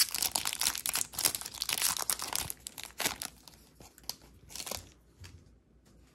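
Foil wrapper of a Topps Chrome trading-card pack crinkling as it is handled and the cards are slid out. The crackling is dense for the first two and a half seconds, then thins to scattered rustles that fade away.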